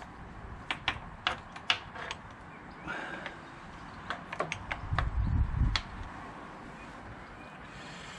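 Small metal parts clicking and tapping as they are handled by hand: scattered sharp clicks through the first few seconds, then a short run of low, dull knocks about five seconds in.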